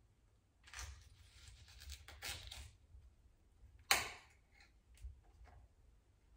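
Knife cutting fruit on a chopping board: a few short slicing scrapes, then one sharp knock about four seconds in, followed by a few light ticks.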